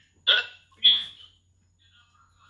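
Two short, clipped bursts of a man's voice heard over a phone video call's speaker, about half a second apart.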